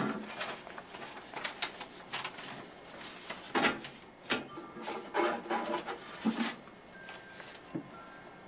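Irregular clicks, knocks and paper rustles as the paper stack and plastic fold stops and trays of a tabletop paper folding machine are handled and moved, resetting it between folds.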